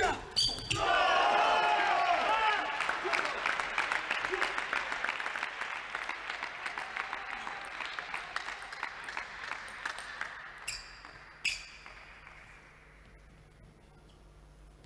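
Table tennis rally ending with a couple of sharp ball hits, then a shout and clapping and cheering in a large hall that fades out over about ten seconds. Near the end, two sharp taps of the plastic ball.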